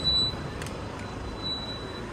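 Town street ambience: a steady wash of traffic noise, a little louder for the first moment, with a couple of faint clicks.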